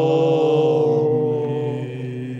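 Voices in Byzantine liturgical chant holding one long, drawn-out note that fades away toward the end.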